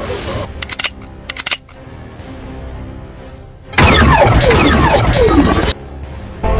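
Edited sci-fi sound effects over music: a few quick sharp clicks early, a quieter humming stretch, then a loud burst of many falling whistling sweeps lasting about two seconds in the second half.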